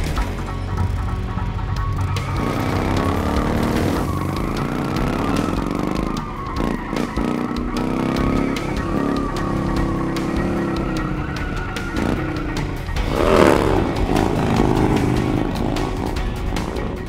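Motorcycle engines revving up and down during stunt riding, spinning circles and wheelies, with a louder surge near the end, mixed with background music.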